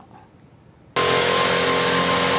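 Engine-driven backpack mist sprayer running steadily as it sprays disinfectant: a loud hiss with a steady hum in it, starting abruptly about a second in.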